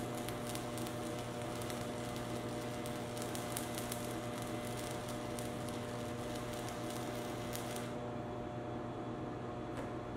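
Electric welding arc, a steady crackling sizzle over the welding machine's even hum. The arc stops about eight seconds in and the hum carries on.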